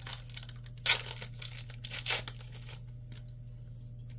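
A Panini Threads football card pack's wrapper being torn open and crinkled: a few irregular rips and crackles, the sharpest about a second in, another near the middle, after which the handling dies down.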